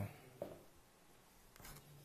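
Near silence between sentences: faint room tone with a short soft sound about half a second in and a couple of faint clicks near the end.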